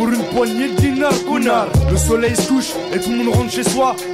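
French-language rap over a hip-hop beat with a wavering, Arabic-flavoured melodic sample, and a deep bass hit about two seconds in.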